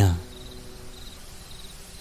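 Faint night ambience of chirping crickets, a soft pulsing high trill that runs steadily as a background sound effect.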